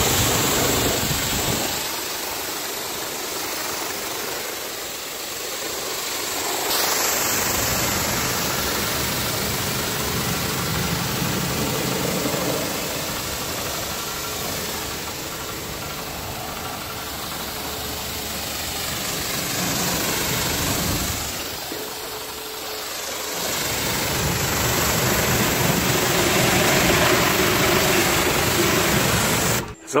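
Pressure washer running, its pump motor humming under the hiss of the water jet spraying onto a car's body to rinse off snow foam. The low hum drops away twice for a few seconds, about two seconds in and again about twenty seconds in, while the spray hiss carries on.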